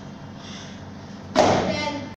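A small rubber tyre slammed down onto the gym floor once, about a second and a half in: a single heavy thud that rings on briefly.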